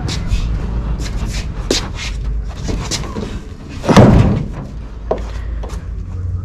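Aluminum jon boat on its wheeled dolly rolling over concrete, a steady low rumble with scattered clicks and rattles. About four seconds in comes one loud thud as the hull is set onto the pickup's tailgate.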